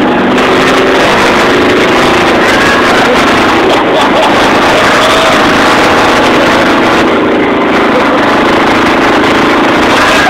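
Monster school bus's 350 V8 engine running hard with road noise while under way, heard from inside the passenger cabin as a loud, steady din.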